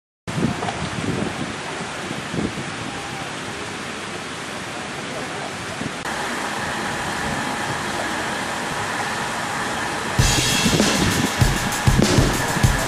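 Steady rushing noise with no clear features, then background music with a drum kit beat comes in about ten seconds in.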